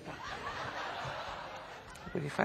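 Breathy, hissing laughter held for about two seconds.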